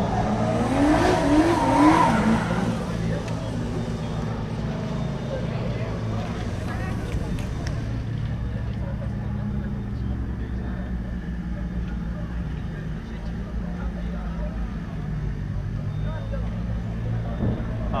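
A car engine idling steadily, with voices over it in the first few seconds.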